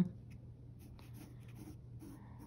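Mechanical pencil sketching on sketchbook paper: faint, short scratchy strokes, over a steady low hum.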